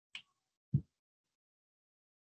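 A brief light click, then about half a second later a single louder, low knock; otherwise quiet.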